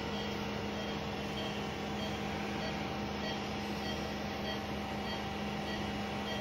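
Steady hum of running room machinery, with a few steady tones and faint short high pips about twice a second.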